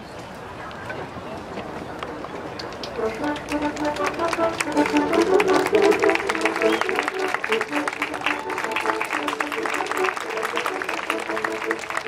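A baroque ensemble starts playing about three seconds in, several sustained melodic parts together, over the talk of an outdoor crowd.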